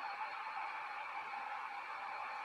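Four small yellow plastic DC gear motors running together off a single battery in a wiring test, a steady faint whine with a hiss above it. They are working.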